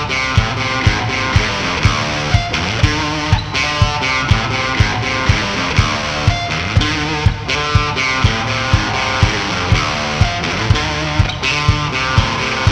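Instrumental passage of a blues-rock song: electric guitar playing over a steady drum beat, with hits about twice a second.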